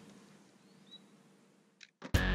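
Near silence: faint outdoor background, with one short, high chirp from a bird about halfway through and a brief click near the end.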